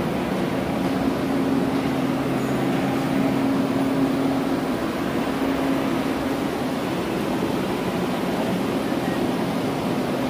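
Steady drone of building ventilation machinery: a low, even hum under a rushing of air, unchanging throughout.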